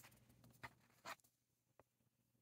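Near silence with a few faint clicks and rustles of tarot cards being handled as one is drawn from the deck.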